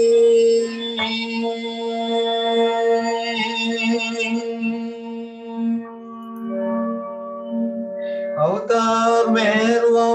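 The close of a sung ballad: a man's voice holds a long final note over a sustained accompaniment chord, which rings on steadily and slowly fades. His voice comes back in about a second and a half before the end.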